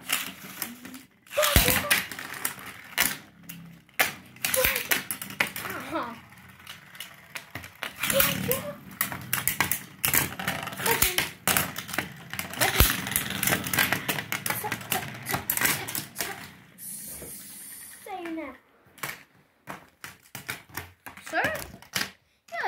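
Beyblade spinning tops clacking and rattling against each other and against a plastic tray: an irregular run of sharp plastic-and-metal clicks and knocks.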